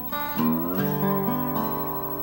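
Acoustic guitar played lap-style with a slide, a blues tune: notes glide upward about half a second in and settle into a ringing chord.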